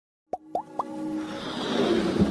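Sound effects for an animated logo intro: three quick rising plops about a quarter second apart, each a little higher than the last, then a whoosh that swells toward the end.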